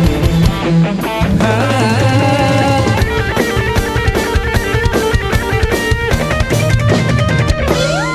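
Live dangdut band playing an instrumental break between sung verses: bass and electric guitar over drum kit and hand drums, with a run of rapid drum hits from about three seconds in.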